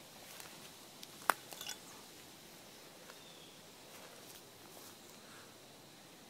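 Footsteps crackling on dry leaf litter and twigs on a woodland floor, with one sharp snap a little over a second in and a few lighter crackles just after.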